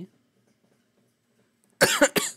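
Near silence, then a man coughs near the end: two quick, sharp coughs.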